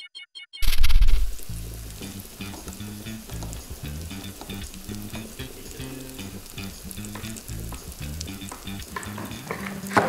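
Food frying in hot oil. The sizzle starts loud about half a second in, then settles to a steady sizzle.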